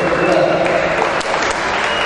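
Audience applauding, with a man's voice heard over the clapping.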